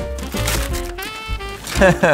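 Gift wrapping paper crinkling as it is pulled away from a box, under steady background music; a laugh begins near the end.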